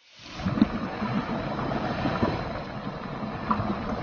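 Green chillies and minced garlic sizzling in hot oil in a wok as they stir-fry: a steady hiss with faint crackles that fades in over the first half second.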